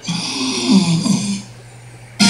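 A cartoon character's drawn-out 'Ahh', lasting about a second and a half, heard from a TV's speakers.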